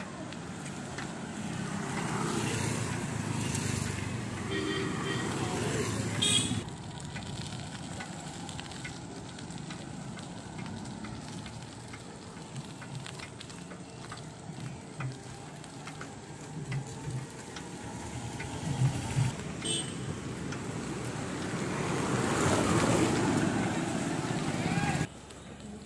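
Street ambience heard from a moving bicycle: a steady rush of wind on the microphone over road traffic noise. The noise drops suddenly about six seconds in.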